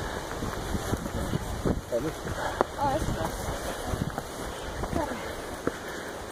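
Wind rushing on the microphone of a hand-carried camera, with short snatches of voices from people walking ahead.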